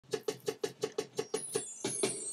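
A fast, even roll of drum-machine hits, about six a second, with a high sweep coming in near the end: the lead-in to a hip-hop beat.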